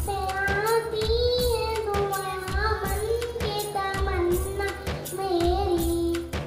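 A child's solo voice singing a melodic devotional song over a microphone and loudspeakers, with a steady percussion beat.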